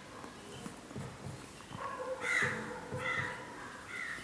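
Marker strokes on a whiteboard, with short harsh animal calls in the background about two seconds in and again a second later.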